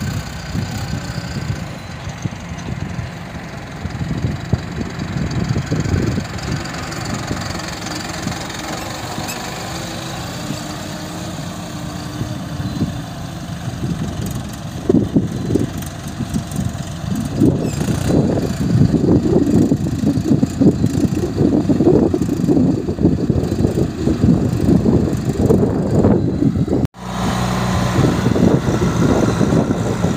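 Diesel engines of a Mahindra tractor and a JCB 3DX backhoe loader running; at first the tractor is towing a trailer. From about halfway the engine noise grows louder and uneven, rising and falling as the loader works close by, and it cuts out for an instant near the end.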